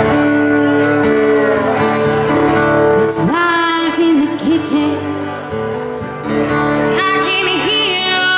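A woman singing live with acoustic guitar accompaniment, holding long notes and sliding up into new ones.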